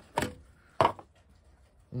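Two sharp plastic clicks about half a second apart, the second louder, as the bottom cover panel of a Renogy Rover MPPT charge controller is unclipped and pulled off.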